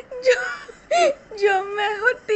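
A very high-pitched voice singing or chanting a funny song in short sing-song syllables, with a longer held, wavering note in the second half.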